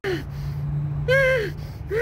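A man's voice giving one drawn-out vocal cry that rises and falls in pitch, like a gasp or 'ohh', about a second in, over a steady low hum.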